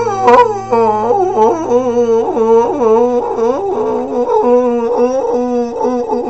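A man's wordless wailing vocal, his pitch swooping up and down again and again in a howl-like run, over a held low keyboard note that stops about four seconds in.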